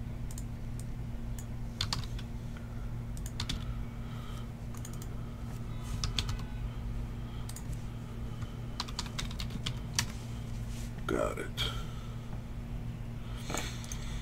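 Typing on a computer keyboard: irregular, scattered key clicks over a steady low hum.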